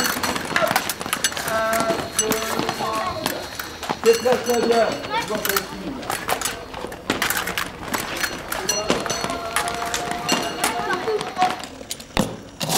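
Fencing practice in a hall: rapid sharp clicks and knocks, the clash of blades and steps on the piste, under children's voices. In the second half a steady tone is held for about three seconds.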